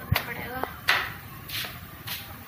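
Two sharp knocks or bumps, one just after the start and a louder one about a second in, with faint voice-like sounds between them.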